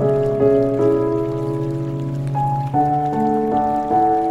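Slow, calm instrumental music of long held notes changing every second or so, laid over the patter of steady rain.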